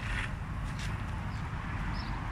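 Water from a garden hose running steadily into a 10-litre plastic bucket of diluted whey, splashing and frothing on the liquid's surface, with a low rumble underneath.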